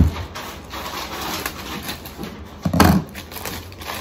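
Rustling and light clicks of a package being handled and opened, with a heavier thump about three seconds in.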